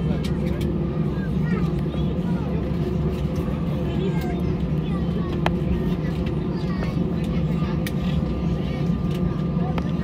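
Steady low rumble and hum of an Airbus A320's engines at taxi idle, heard from inside the cabin as the jet taxis after landing, with passengers' voices murmuring faintly and a few sharp clicks.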